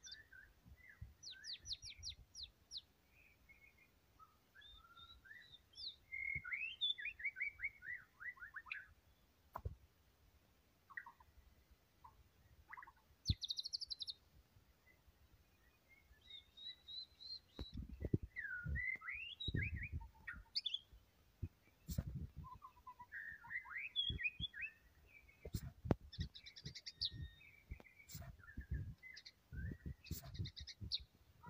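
White-rumped shama singing in full song: varied phrases of whistles, rapid trills and quick runs of notes, separated by short pauses. A few low thumps and sharp clicks come through in the second half.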